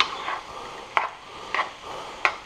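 Metal spoon scraping and tapping against a Teflon nonstick frying pan while breaking up clumps of cold rice, with a short sharp stroke about every half second to second.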